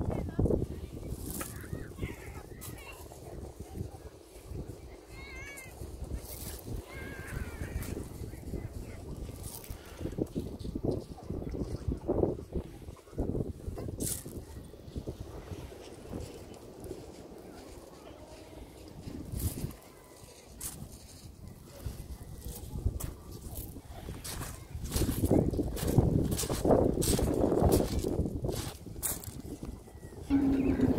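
Footsteps crunching on a shingle beach with wind rumbling on the microphone, getting louder and busier near the end. A few gull calls come in the first several seconds.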